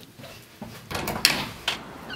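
Front door being unlatched and opened: a cluster of sharp clicks and knocks from the latch and door about a second in, and one more near the end.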